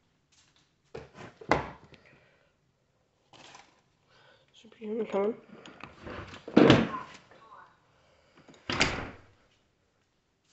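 Sliding glass patio door being handled: a knock and rattle about a second and a half in, and louder slides or bangs near seven and nine seconds. A short wavering voice is heard about five seconds in.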